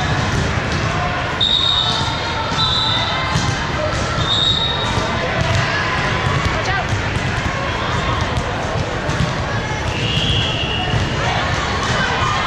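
Echoing sports-hall din from several volleyball matches at once: the ball being hit and bouncing on hard court floors, players calling and voices in the background, with a few short high squeaks.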